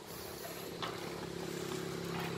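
Small motorbike engine of a motorbike-towed cargo cart (xe lôi) running steadily, getting slowly louder.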